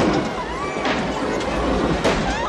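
Film soundtrack of music mixed with a busy, steady background of ambient sound.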